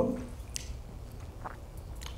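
A pause in speech: quiet room tone with a few faint short clicks of mouth noise, picked up close by a headset microphone.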